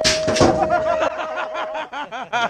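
BMX starting gate's electronic start cadence: its final long, steady beep lasts nearly two seconds, with the gate slamming down as the long beep begins. Voices and laughter come over it.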